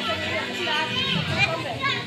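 Children's voices chattering and calling out over general crowd talk, with a couple of high, sliding calls near the end.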